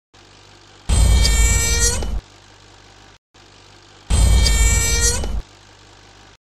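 The same dramatic sound effect played twice, about three seconds apart: each time a deep rumble with a high, ringing pitched layer on top, lasting a little over a second and dipping in pitch just before it cuts off.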